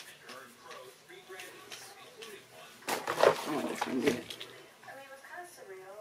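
A round hairbrush is being drawn back through short hair, making soft rustling strokes. A woman's voice murmurs quietly in the middle.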